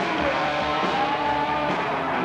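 Live rock band playing loud: distorted electric guitar holding long notes that bend and slide in pitch, over drums and bass.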